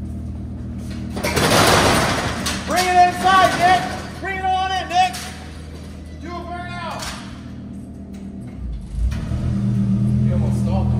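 A roll-up shop door rattling open about a second in. Near the end a Lamborghini Huracán's V10 engine comes up and runs at a low, steady idle.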